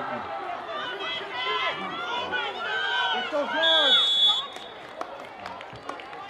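Sideline spectators shouting and cheering during a youth tackle football play, many voices overlapping. Past the middle, a referee's whistle sounds once, briefly, blowing the play dead.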